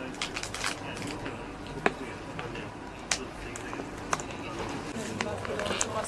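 Indistinct voices over a steady background hiss, broken by scattered sharp clicks; the loudest click comes a little under two seconds in, with others about three and four seconds in.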